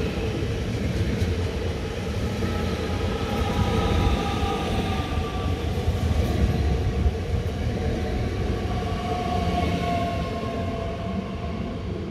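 Bombardier Talent 2 (DB class 442) electric multiple unit running past at close range as it pulls into the station: steady wheel-on-rail rumble with faint drive whine tones that slowly fall in pitch as it slows.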